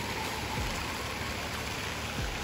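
Steady splashing of water from an indoor fountain, an even noise with no break.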